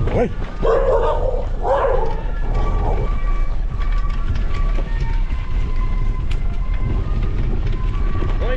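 A dog barking about four times in the first three seconds, over a steady low rumble of wind and tyre noise from a bicycle riding a dirt road.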